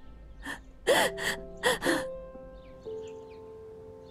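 A woman crying, with a few gasping sobs and broken cries in the first two seconds, over soft background music of steady held notes.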